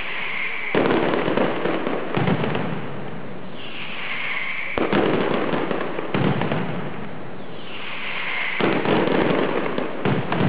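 Mascletà barrage: dense, rapid strings of firecrackers going off, coming in loud waves about every four seconds, each wave opening with a sharp bang, with a high hiss between the waves.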